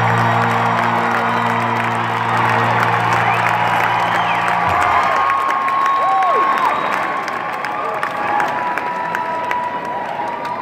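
Large arena crowd cheering and applauding at the end of a song, over a low held chord from the band that cuts off about halfway through. Several drawn-out whistles from the crowd follow.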